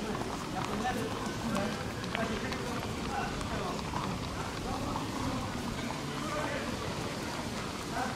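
A garden hose spraying water over a racehorse, heard as a steady hiss, under the indistinct voices of people talking.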